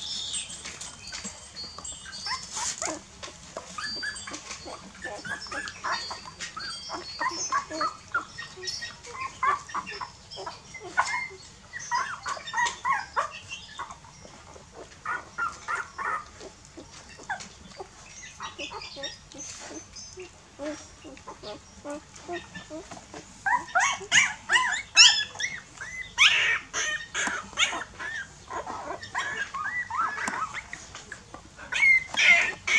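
Newborn puppies squeaking and whimpering in many short, high calls while they suckle from their mother. The calls come thickest and loudest toward the end.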